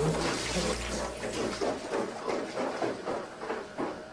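A man running and panting, heard through a hissy camcorder microphone. The sound is a noisy rush with a quick rhythmic pattern of about four strokes a second, plus a low rumble at first, and it fades near the end.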